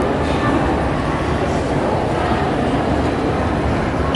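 Steady low rumble of a moving escalator and the busy hall around it, heard while riding down, with faint voices in the background.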